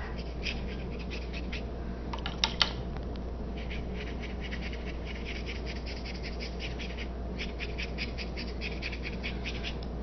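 A wet paintbrush stroking back and forth across watercolor paper, making runs of quick, scratchy brush-on-paper strokes. Two louder clicks come about two and a half seconds in, and a steady low hum runs underneath.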